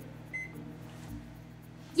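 Countertop microwave oven's keypad giving one short beep as a cook time is entered, then the oven running with a steady low hum.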